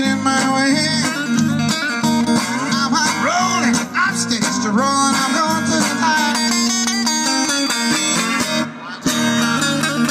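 Acoustic guitar strummed, with a man singing over it, his voice sliding between notes; the playing breaks off briefly near the end, then resumes.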